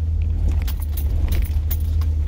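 Cab interior of an older truck driving on a gravel road: a steady low rumble from the engine and tyres, with irregular clicking and rattling from the cab as it jolts over the gravel.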